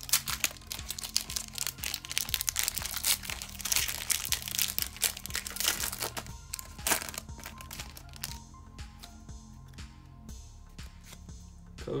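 Foil Pokémon booster-pack wrapper crinkling as it is torn open by hand, busiest for about the first six seconds, then sparser rustles and clicks as the cards are slid out. Soft background music runs underneath.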